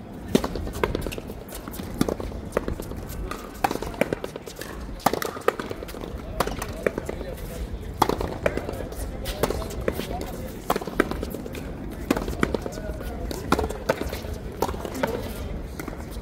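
Ball play on a frontón court: a rubber ball cracking sharply off strung rackets and the concrete wall, the strikes coming irregularly about once a second, with voices talking in the background.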